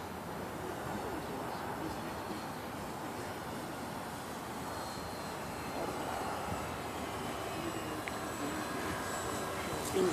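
Radio-controlled Dynam Tiger Moth model biplane flying overhead: its electric motor and propeller give a steady, faint drone with a thin high whine.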